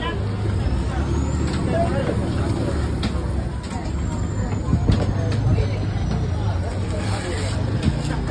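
Heavy knife slicing a large sole on a wooden chopping block, with a few sharp knocks of the blade against the wood, over a steady low engine rumble from a nearby vehicle and background voices.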